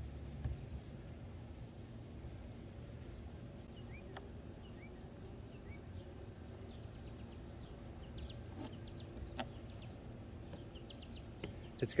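Quiet garden ambience: faint bird chirps and a thin high insect-like tone over a low steady background hiss, with a few soft knocks.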